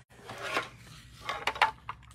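A small metal tin of embossing supplies being handled on a craft desk: a brief rustle, then a few light metallic clicks and knocks.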